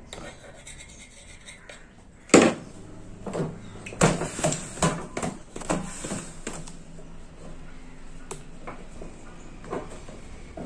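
A sharp knock about two seconds in, then a run of clicks and clatters of small metal parts on a wooden table, and a cloth rubbing as it wipes out the stator of a wall fan motor.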